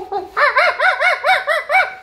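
A quick run of about six chicken-like clucking squawks, each rising and falling in pitch, after a shorter call at the start.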